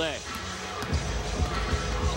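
A basketball being dribbled on a hardwood arena court: a few separate bounces, over background music and crowd noise in the arena.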